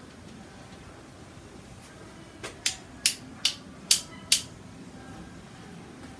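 A quick run of six sharp clicking taps, about two to three a second, starting a little after two seconds in, from painting tools or paint containers being handled while more paint is loaded.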